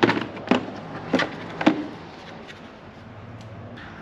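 Sharp clicks and knocks from a hand tool and plastic intake parts as the supercharger's air box is taken apart and the cone air filter lifted out: about four distinct clicks in the first two seconds, then only a faint steady hum.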